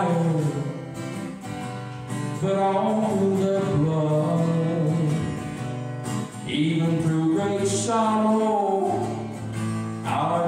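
A man singing a slow gospel song and playing an acoustic guitar, with long held sung notes.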